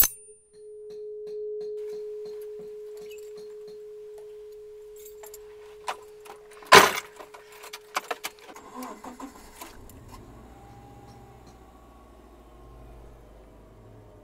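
Car keys jangling and clicking near the ignition, then a steady single-pitched warning tone. About seven seconds in, a loud thump cuts the tone off, a few lighter clicks follow, and a low steady rumble runs through the last few seconds.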